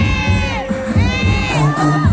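Audience shrieking and cheering in long high-pitched cries, one at the start and another about a second in, over loud dance music with a steady bass beat.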